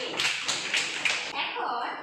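Hands striking out a steady rhythm: about five sharp hits, a little over three a second, followed by a short bit of voice near the end.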